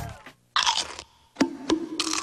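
A short crunch, like a bite into a Pringles potato crisp, comes about half a second in. Near the middle a beat of sharp pops starts over a low steady tone.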